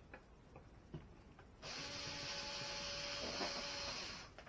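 A small handheld electric driver's motor runs steadily for about two and a half seconds, starting a little over a second and a half in, while taking apart the RC truck's front suspension. A faint click comes about a second in.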